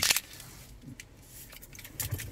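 Car key fob and its metal key clinking in the hand: one short sharp clink right at the start, then faint handling rustle.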